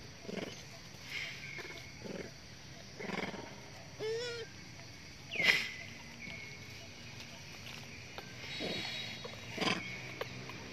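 Long-tailed macaques giving short calls about once a second. A wavering call comes a little past four seconds in, then the loudest, a sharp squeal, about halfway through, with two more calls near the end.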